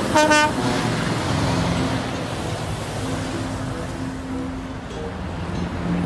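Semi-truck hauling a shipping container: a short horn blast just at the start, then the engine running with steady road noise as it drives by.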